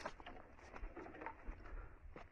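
Faint outdoor ambience with a bird calling, and a few short light clicks scattered through it.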